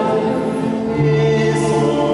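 Mixed choir of men's and women's voices singing in held chords, with a new low note entering about a second in.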